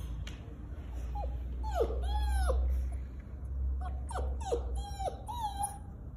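Puppy whining at a closed door: a run of about eight short, high whines, most falling in pitch, in two bunches starting about a second in. It is desperate to be let into the room.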